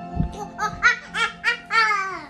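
A person laughing in a high-pitched voice: a quick run of about five "ha" pulses, getting louder, ending in a longer one that slides down in pitch, over steady background music.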